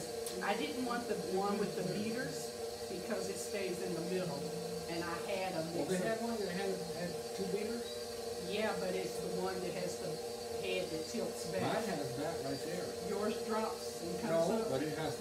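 Two people talking over the steady hum of a KitchenAid Pro 600 series stand mixer running.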